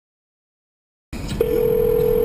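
Silence, then a phone line opens with hiss about a second in, and a click is followed by a single steady telephone tone.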